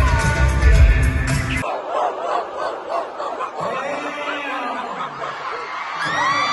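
Live pop concert music with heavy bass cuts off suddenly about a second and a half in. What remains is a crowd of fans screaming and cheering through the break.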